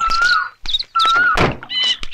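A car door shut with a heavy thunk about one and a half seconds in. Birds whistle a wavering note twice before it and chirp near the end.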